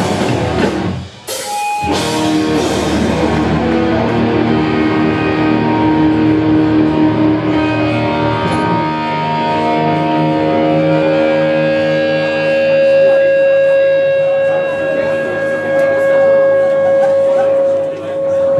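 Live hardcore punk band playing loud distorted electric guitars and drums. The sound breaks off sharply for a moment about a second in, then comes back. In the second half the song ends on long held guitar notes, one steady tone ringing to the end.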